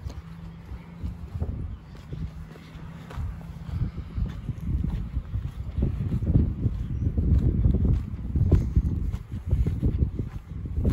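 Footsteps of a person walking outdoors, crossing from concrete onto dirt ground covered in pine needles and twigs, with the scuff and handling of the phone being carried; the steps grow louder from about five seconds in. A faint steady low hum runs under the first four seconds.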